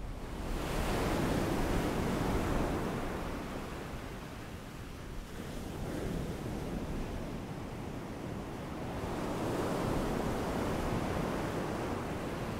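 Sea waves washing in and drawing back, fading up from silence at the start, with one swell early and another near the end.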